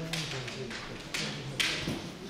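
Bamboo shinai knocking together at the tips as two kendo players probe each other's blades: three sharp taps, the loudest near the end.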